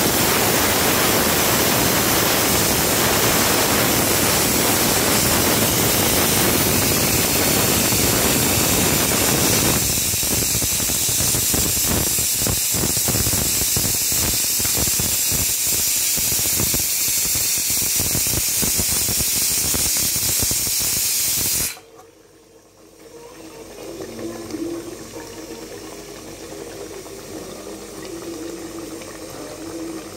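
Egg and brinjal masala gravy sizzling hard in an aluminium pan: a loud, steady hiss, with dense crackling from about ten seconds in. It cuts off suddenly a little over twenty seconds in, leaving a much quieter, low background.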